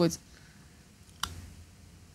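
A single sharp click about a second in, in an otherwise quiet pause, just after a voice trails off.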